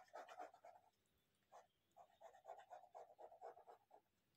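Faint pen scratching on paper as lines of a diagram are drawn over: short strokes in the first second, a pause, then a run of quick strokes from about two seconds in until near the end.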